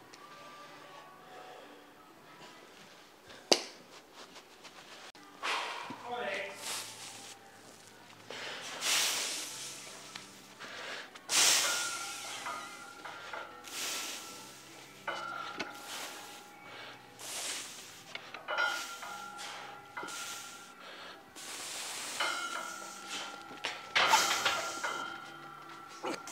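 Forceful breathing of a strongman setting up over a 300 kg deadlift bar: a string of sharp, hissy breaths every second or two as he grips and braces before the pull. A single sharp knock comes a few seconds in.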